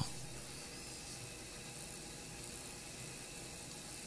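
Steady low hiss with a faint hum underneath: the background noise and room tone of an open studio microphone.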